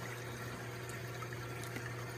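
Water from an aquaponics sand filter's return hose running steadily into a 100-micron filter sock in the fish tank, over a steady low hum.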